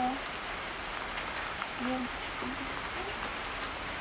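Light rain falling on foliage: a steady hiss with scattered small drop ticks. A voice murmurs briefly about two seconds in.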